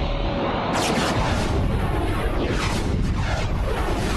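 Cartoon super-speed sound effect: a loud, dense rushing rumble with several falling whooshes as the character races along the mountain path.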